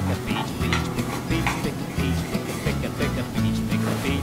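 Background music with a steady bass line and beat.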